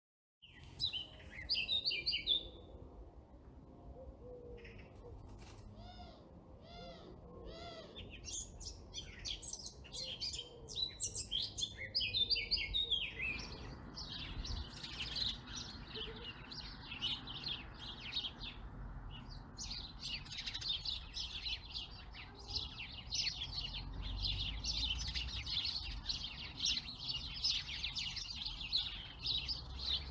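Songbirds singing: separate chirps and short phrases in the first seconds, then a dense, continuous chorus of chirping from about 13 seconds in.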